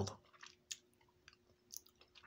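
Faint chewing of a mouthful of instant rice and noodles, with a few soft mouth clicks.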